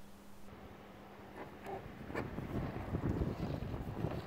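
Wind buffeting the microphone outdoors: a gusty low rumble that builds from about a second and a half in, with a single click about two seconds in. The first moments are quiet.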